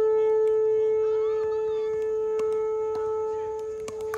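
Several sharp pops of pickleball paddles hitting a plastic ball during a rally, heard over a loud, steady droning tone with overtones that runs throughout.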